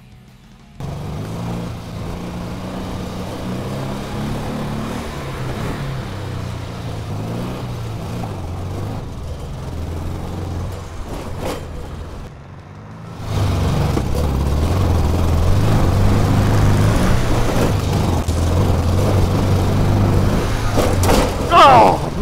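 Dune buggy's engine running hard under throttle as it drives along a dirt track, its pitch stepping up and down with the revs. It drops off briefly a little past halfway, then comes back louder. A man's voice is heard near the end.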